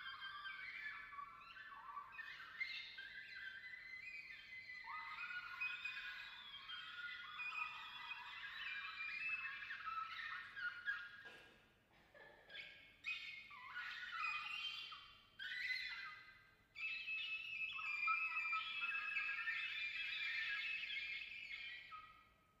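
Oboe and cor anglais playing a contemporary duo together: quick, overlapping high figures that flicker and shift in pitch. The playing thins out briefly a little past halfway, pauses for a moment at about three-quarters, and stops right at the end.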